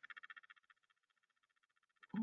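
Near silence, with a faint, rapid, high-pitched buzz that fades after about half a second.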